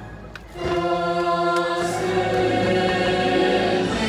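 Choir singing a sustained chord in the fireworks show's soundtrack. It swells in about half a second in, after a brief lull in the music.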